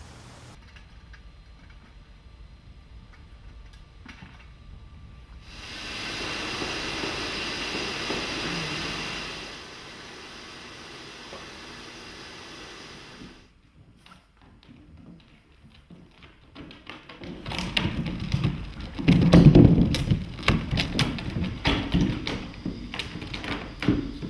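A steady hiss lasting about four seconds, then, after a quiet spell, a busy run of knocks and heavy thuds over the last seven seconds.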